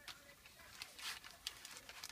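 Faint crinkling and rustling of plastic-wrapped tampons being handled and set down in a cardboard box, a scatter of short crackles.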